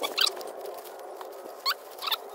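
Plastic wrapping rustling and crinkling as it is pulled apart by hand, with a sharper crinkle just after the start and another near the end, over a steady hiss.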